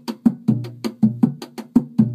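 Rebolo, the hand-played pagode drum, struck by hand in a steady pattern of about four to five strokes a second. The low open tones ring on between strokes, mixed with sharper, drier hits.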